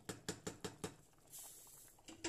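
Wooden spoon stirring chunks of beef in broth in a metal pot: a quick run of six or seven soft knocks and wet clicks in the first second, then a brief hiss.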